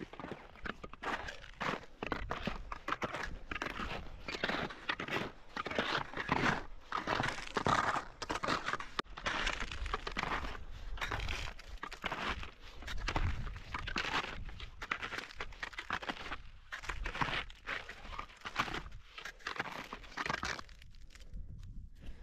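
Uneven crunching and scraping of a ski tourer moving uphill over frozen, crusty snow on a skin track.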